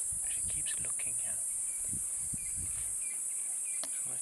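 Steady high-pitched chorus of crickets, unbroken throughout. Low rumbling runs under it for the first three seconds, and a single sharp click comes just before the end.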